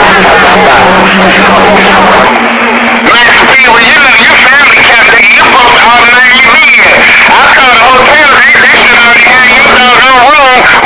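CB radio channel with loud static, a steady low hum and garbled, warbling voices of overlapping transmissions that can't be made out; the hum steps up a little about two seconds in, and the warbling voices thicken from about three seconds on.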